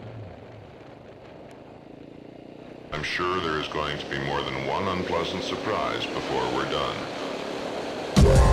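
A quiet stretch, then about three seconds in a person's voice comes in suddenly, rising and falling in pitch, over a steady low hum.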